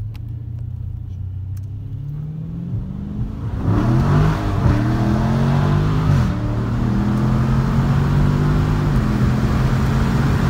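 2016 Dodge Challenger Scat Pack Shaker's 6.4-litre HEMI V8 heard from inside the cabin: light throttle at first with the note slowly rising, then about three and a half seconds in it goes to full throttle and gets much louder, the engine note climbing as the car accelerates. The pitch drops briefly at an upshift about six seconds in, then climbs again.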